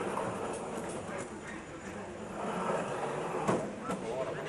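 Murmur of many voices and a steady rumble in a large hall, with a few faint clicks and a sharper knock about three and a half seconds in.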